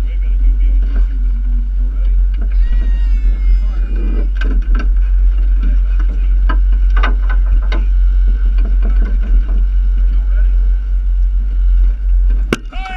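Steady low rumble of a moving boat, with faint voices, a high call about three seconds in, and several sharp knocks in the middle.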